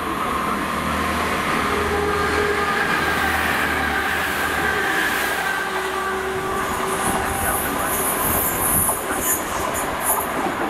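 A Great Western Railway diesel multiple unit passes through the station: a low diesel engine drone as it approaches, then a loud high hiss of wheels on rail as it runs past, from about seven seconds in.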